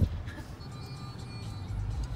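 Car cabin noise from a moving car, a steady low rumble of engine and road, with faint music over it.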